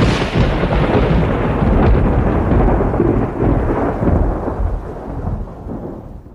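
A thunder sound effect: a sudden crack followed by a long rolling rumble with a rain-like hiss, fading away over several seconds.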